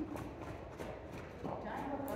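Hoofbeats of a horse moving at speed in a circle on a lunge line over the soft dirt footing of an indoor arena: a quick, even rhythm of dull thuds, about three a second. A voice starts near the end.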